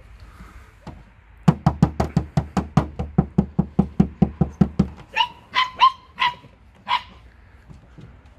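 A dog barking in a fast, even run of about five barks a second for roughly three and a half seconds, followed by a few short, higher-pitched yips.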